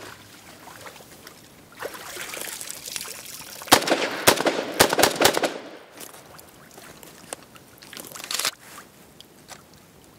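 Water running and splashing off a Robinson Armament XCR rifle as it comes out of the pond. Then a string of rifle shots in quick succession about four seconds in, with a few more later. The rifle fires and cycles normally despite the sand and water soaking.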